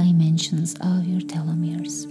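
A woman's voice speaking softly over steady ambient meditation music with a sustained drone; the voice stops just before the end.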